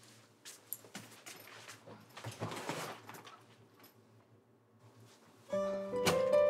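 Faint, quiet room sound with a few soft footsteps and light taps. About five and a half seconds in, light background music with plucked notes starts and is the loudest sound.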